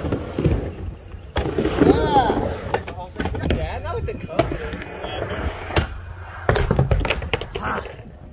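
Skateboard rolling on a wooden mini ramp, the wheels rumbling on the transitions, with several sharp knocks of the board and trucks hitting the deck and coping.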